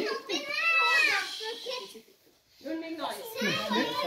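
Children's voices talking and calling out, high-pitched, with a brief drop to silence about two seconds in.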